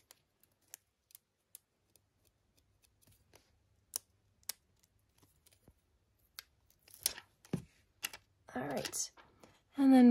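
Tweezers and a sticker being handled: light, scattered clicks and ticks as the tweezers pick at and peel the sticker from its backing, with a few short rustles in the last few seconds.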